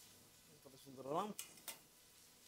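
Mostly quiet kitchen room tone with a brief, soft murmur from a man rising in pitch about a second in, followed by two faint clicks.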